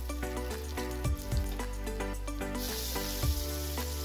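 Background music with a steady beat. About two and a half seconds in, a sizzle of frying starts and keeps on, as chopped tomatoes go into the hot pan of sautéed onion and garlic.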